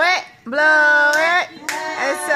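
Family voices cheering with long drawn-out calls and a few hand claps as the birthday candle is blown out.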